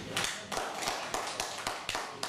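Scattered hand clapping from a small audience as the song ends: separate, irregular claps at about six a second.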